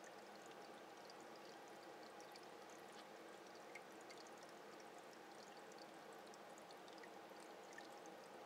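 Faint, steady trickle of running water with small scattered ticks, typical of an aquarium's filter or air bubbles returning water into the tank.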